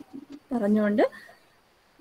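A woman's voice over a video call holding one drawn-out hesitant syllable for about half a second, rising in pitch at its end, as she pauses mid-sentence.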